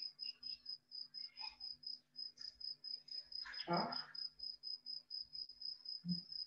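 A steady high-pitched pulsing chirp, about seven pulses a second, over a faint low hum, with a short voice-like sound a little past the middle.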